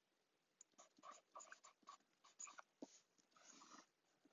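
Faint pen strokes on paper, writing words: short scratchy strokes in quick succession starting about half a second in, with a longer stroke near the end.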